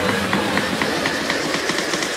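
Electronic background music in a stripped-back passage. The deep bass drops out right at the start, leaving a quick, even pattern of percussive hits, about four a second.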